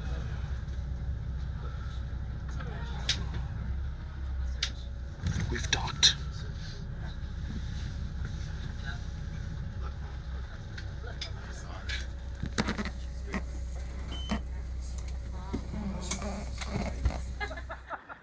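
A tour boat's engine running with a steady low rumble, with voices faintly in the background and a few light knocks. The rumble cuts off at the very end.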